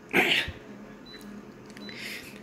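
A person coughs once near the start, then a copier's touchscreen gives two faint short beeps as options are pressed, over the machine's low steady hum.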